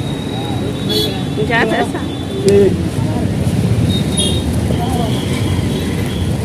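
Street ambience: a steady traffic rumble with scattered voices of passers-by.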